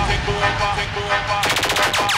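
Drum-and-bass / jungle mix thinning out with the heavy bass dropped back, then a short, rapid burst of machine-gun-fire sample, about fifteen shots a second, in the last half second.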